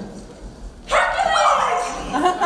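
An actor's loud, sudden vocal yelp about a second in, held for under a second and dropping in pitch at the end.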